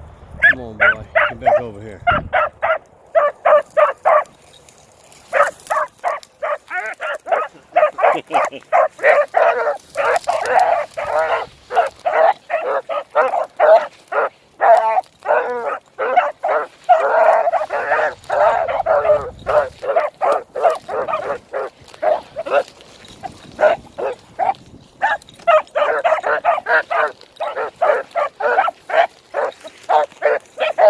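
Beagle giving tongue while working a scent line through the grass: rapid short barks, several a second, kept up almost without a break, with a couple of brief pauses.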